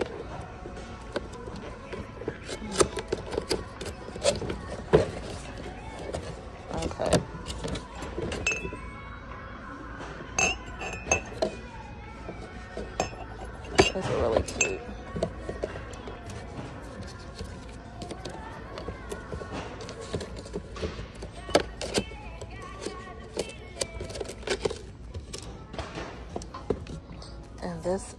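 Porcelain mugs clinking and a cardboard box rustling as its flaps are pulled open and the mugs handled, a string of short sharp clicks with the loudest about halfway through. Background music plays steadily underneath.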